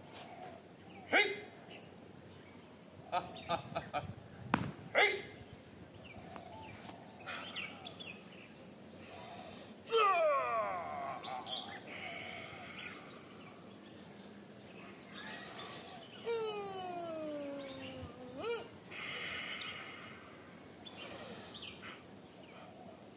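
Sharp snaps and slaps of a solo Hung Gar kung fu form: hand strikes and sleeves cracking, several in quick succession in the first few seconds. A few long cries falling in pitch come about ten seconds in and again near the end, the second ending in a sharp snap.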